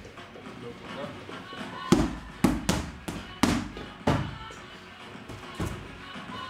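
Boxing gloves smacking into focus mitts during pad work: six sharp strikes, a quick run of them from about two seconds in and one more near the end.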